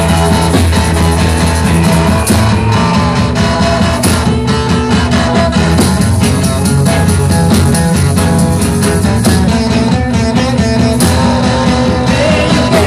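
Live rock band playing an instrumental passage: electric guitars over bass and drums, with cymbal crashes about two, four and eleven seconds in.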